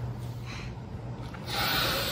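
A person sniffing hard through the nose, a noisy hiss that starts about three-quarters of the way in, over a low steady hum.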